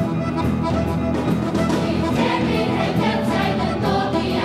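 Children's choir singing with a live band accompaniment, steady and continuous.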